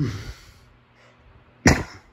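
Two short coughs: the first trails off just after the start, the second comes about one and a half seconds in.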